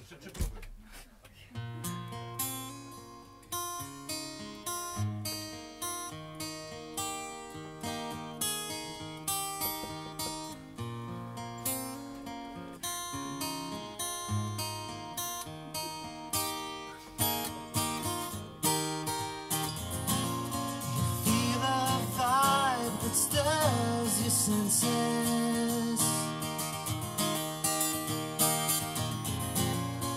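Solo acoustic guitar playing a song's instrumental intro, picked note by note, growing fuller and louder about two-thirds of the way through.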